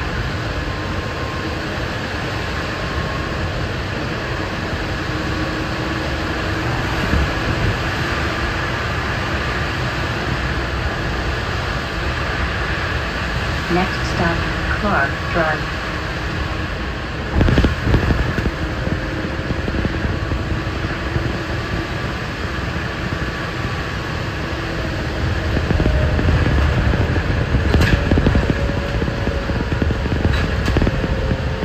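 Cabin sound of a moving 2006 New Flyer electric trolleybus: a steady hum of motor and ventilation fan over road noise. There is a louder rumble about 17 seconds in, and the ride grows louder again near the end.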